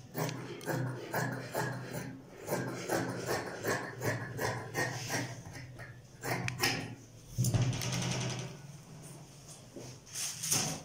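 Dressmaking shears cutting through fabric, a rapid run of snips at about three a second. A louder, steadier low sound lasts about a second near the end.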